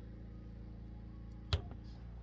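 Steady low hum, with a single sharp knock about one and a half seconds in.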